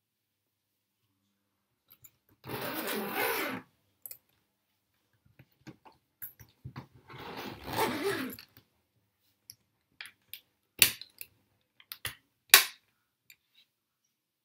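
A hard-shell suitcase being closed: its zipper is pulled in two rasping runs of a second or so, then several sharp clicks follow from its catch and lock, two of them loud near the end.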